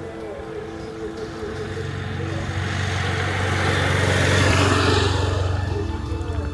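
A race motorcycle passes close by, its engine hum and road noise building to a peak about four and a half seconds in, then falling away.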